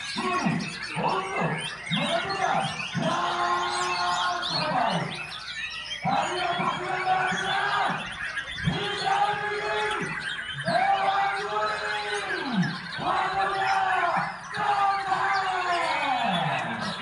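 Several caged white-rumped shamas (murai batu) singing at once, a dense mix of high chirps and whistled trills. Over them, human voices shout repeated drawn-out calls, each about a second long with short breaks between.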